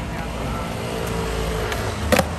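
Skateboard wheels rolling over stone-tile paving: a steady low rumble, with a couple of light clicks over the tile joints.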